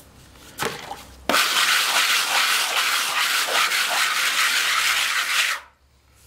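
Hand float scraping back and forth over fresh cement render, smoothing and levelling it. The rough scraping starts about a second in, runs for about four seconds and stops sharply near the end.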